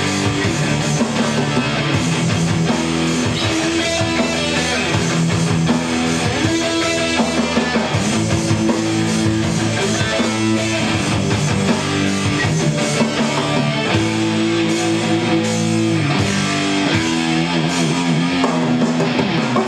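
Live rock music: an electric guitar strumming chords over a band, with no singing.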